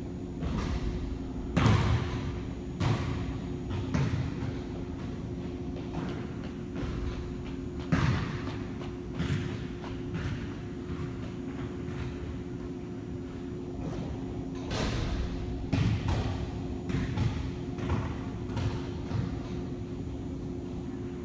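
Steady low room hum, with a dozen or so irregular soft thumps and knocks scattered through it, the loudest about two seconds in and again about eight seconds in.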